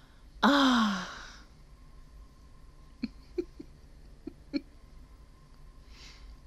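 A woman's short wordless exclamation, falling in pitch and breathy, about half a second in. A few faint brief sounds follow about three to four and a half seconds in.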